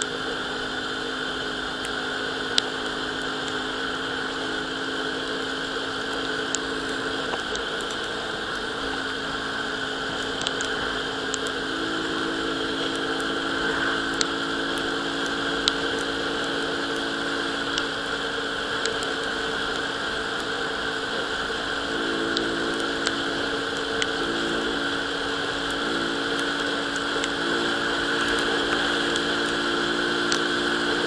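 Euro Rapido 110 scooter's engine running steadily at cruising speed, with wind and road noise. Its pitch steps up slightly twice, about a third and two-thirds of the way through, and there are a few light ticks.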